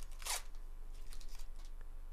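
Foil trading-card pack wrapper crinkling and cards rubbing against each other as a pack is opened by hand. A few short crackles, the sharpest about a third of a second in and a small cluster about a second later.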